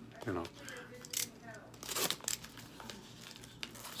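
Crinkling and rustling of packaging being handled, with a few short crackles about one and two seconds in.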